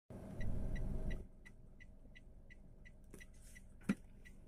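Inside a moving car: a low engine and road rumble, loud for the first second and then dropping away. Under it a steady high tick repeats about three times a second, and there is one sharp click just before the end.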